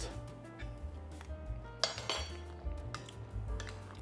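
Wire potato masher clinking and scraping against an enamelled pot while potatoes are mashed, with a few sharp clinks about two seconds in. Background music plays underneath.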